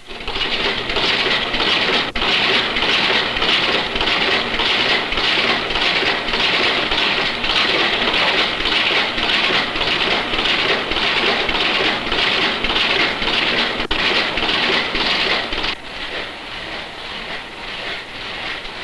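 A machine clattering steadily in a fast, even rhythm, with a few sharp clicks; it drops in level near the end.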